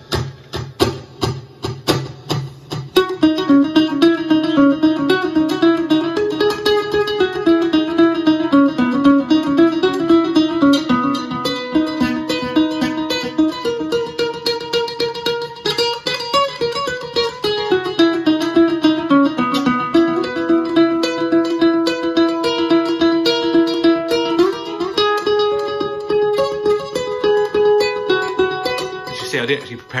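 Lava U carbon-composite ukulele played through an acoustic guitar amp with its built-in echo effect on, each note trailing into loud, overlapping repeats. Quick strums for the first few seconds, then a run of held, ringing notes.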